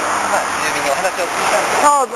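People talking over the steady noise of passing road traffic.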